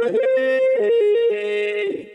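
Vocoder synth voice from the Vio app on an iPad, sounding a short phrase of a few stepped notes, then fading out near the end.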